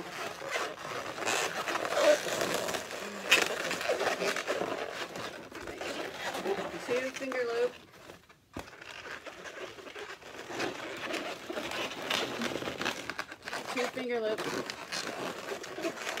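Latex twisting balloons rubbing and squeaking against each other and the hands as they are twisted and shaped. There are short squeals that slide up and down in pitch about seven seconds in and again near the end, with a brief lull just after the middle.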